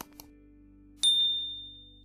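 A click, then about a second in a single bright notification-bell ding that rings out and fades: the sound effects of a subscribe-button animation.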